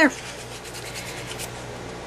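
Fingers rubbing metallic wax paste onto a paper-collaged frame: soft, uneven rubbing strokes.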